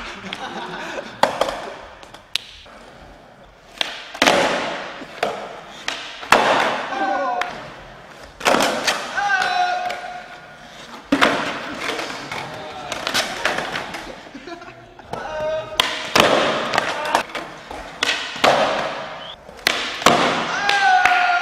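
Skateboards on a smooth concrete floor: repeated sharp pops and hard board landings, clacks and thuds several seconds apart, with short shouts from people in between.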